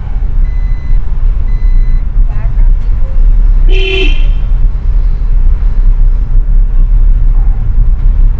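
Car engine and road rumble heard from inside the cabin as the car drives slowly down a street. Two short high beeps come in the first two seconds, and a vehicle horn toots once, briefly and loudly, about four seconds in.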